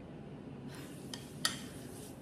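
A few light clicks of a fork against a dinner plate as a chicken tender is picked up, the sharpest about one and a half seconds in, over quiet room tone.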